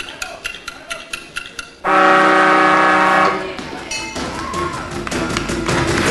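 Game-show timer sound effect: rapid ticking, then about two seconds in a loud, steady buzzer-like horn blast lasting about a second and a half, signalling that the clock has run out.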